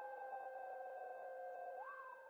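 Faint electronic synthesizer outro tones. Two steady held notes sound under a third tone that slides slowly downward; near the end it jumps up quickly, then glides down again.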